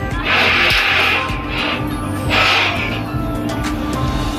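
Background music with a steady bass line, bursts of hissy sound and a high sweep gliding downward midway.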